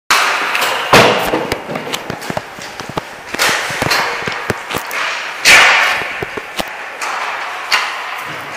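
Ice hockey practice: sharp cracks of sticks hitting pucks and pucks striking the boards, net and ice, with echo from the rink. The loudest hits come near the start, about a second in, and around three and a half and five and a half seconds, with many lighter clicks between.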